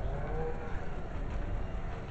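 Low rumble of room noise in a meeting room, with a faint, brief murmur of a voice early on.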